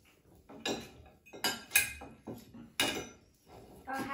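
Cutlery clinking and scraping against plates: a knife working meat off a skewer and forks on plates, a handful of separate clicks and scrapes with short quiet gaps between.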